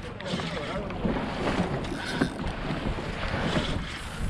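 Wind buffeting the microphone on an open boat at sea, a steady rumbling noise, with sea water washing beside the hull.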